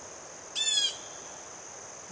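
A steady high insect drone, with one short, harsh bird call about half a second in.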